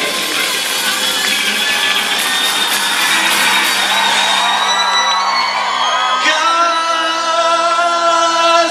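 A live rock band playing an instrumental passage of held chords on electric guitars and keyboard, with sliding notes near the middle. A new chord comes in about six seconds in.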